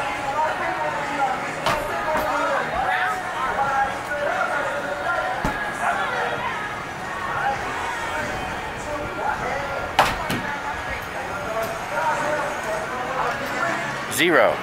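Footballs thrown at a midway football-toss booth, hitting the target board and backdrop with a few sharp thuds, the loudest about ten seconds in, over steady background voices.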